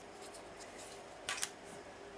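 Small plastic clicks from a tiny Figma accessory laptop being handled: faint ticks, then two sharp clicks close together a little past the middle.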